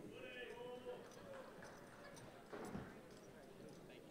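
Faint, distant voices in a large hall during the first second and a half, then a soft thump about two and a half seconds in, over low room tone.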